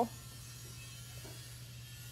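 A steady low hum with a faint background hiss, and no other distinct sound.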